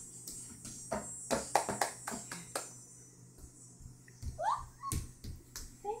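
Irregular light hand taps and claps, a quick cluster of them over the first two and a half seconds, then a baby's short rising squeal about four and a half seconds in.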